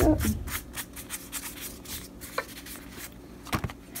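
Sheets of paper being handled: light, irregular rustles and ticks, with a sharper pair of clicks near the end.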